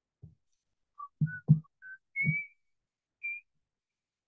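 Someone whistling a short run of separate notes that climb in pitch, with a few soft low thumps among the first notes.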